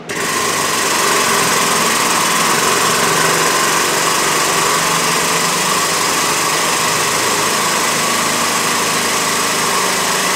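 Pump motor of a set of race-car jacks running steadily as it raises the car, starting right at the beginning.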